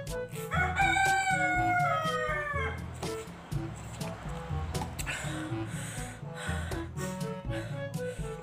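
A loud animal call starts about half a second in and lasts about two seconds, its pitch dropping toward the end. Background music with a steady beat plays throughout.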